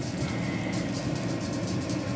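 Tortang talong, an omelette of mashed eggplant and egg, sizzling in hot oil in a nonstick frying pan, with steady irregular crackles and pops.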